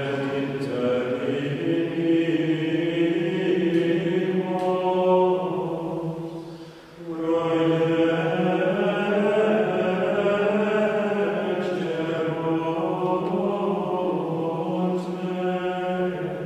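A small group of friars singing plainchant: male voices in two long, sustained phrases, with a short break for breath about seven seconds in.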